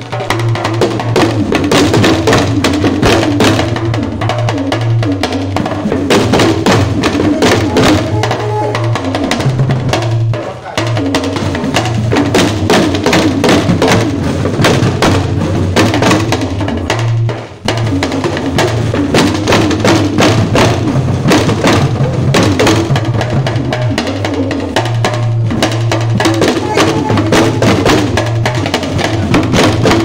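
An ensemble of Dagomba lunga talking drums (hourglass-shaped tension drums struck with curved sticks) playing a fast, dense rhythm, the drum pitches stepping up and down. The playing breaks off briefly twice.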